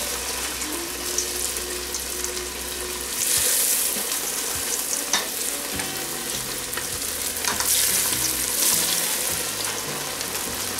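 Cornflake-coated fish fillets deep-frying in hot cooking oil in a stainless steel pot, a steady sizzle. It swells louder a little after three seconds and again near eight seconds as more fillets go into the oil.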